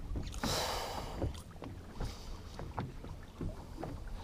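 Small waves lapping against a fishing boat's hull, with wind rumble on the microphone, a short rush of noise about half a second in, and scattered light knocks.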